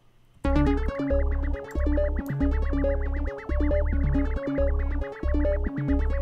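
Playback of a trap beat loop made in FL Studio with its stock synth plugins: a synth melody with a fast high trill over long, deep bass notes. It starts about half a second in and repeats in a steady pattern.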